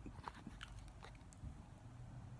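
Near silence with a low hum and four faint, light clicks spaced about half a second apart.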